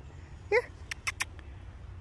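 A woman says "Here" and then makes three quick clicking sounds with her mouth, calling a wild turkey to come closer, over a steady low background rumble.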